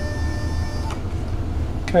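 CNC mill table being driven slowly along one axis: a faint steady whine from the axis drive that stops about a second in, over a low steady hum.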